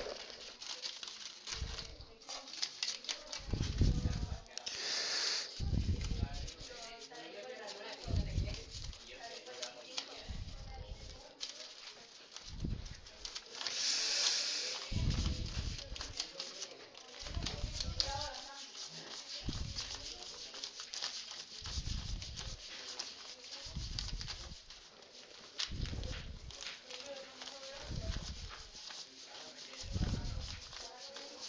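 Faint, indistinct classroom voices, with soft low thumps every couple of seconds and a few short hissing bursts.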